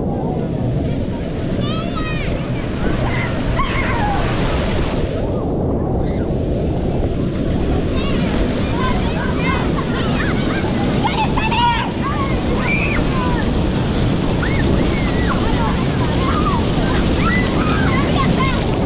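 Water pouring steadily from a mushroom-shaped fountain and splashing onto an inflatable pool dome close by, a continuous rushing splash. Children shout and squeal over it throughout.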